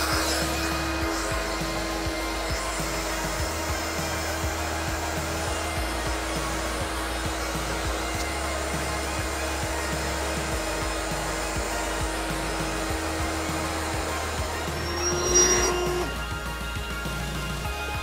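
Built-in electric air pump of an EZ Inflate queen air mattress running steadily with a single hum, pumping the air out to deflate the mattress, over background music. Near the end the pump rises briefly louder and then stops, leaving only the music.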